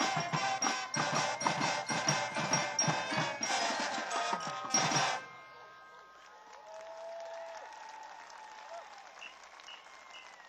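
High school marching band playing, brass over a steady drum beat, building to a loud final hit and cutting off abruptly about five seconds in.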